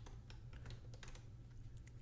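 Faint computer keyboard keystrokes, a handful of separate clicks spread across the two seconds, typing out code.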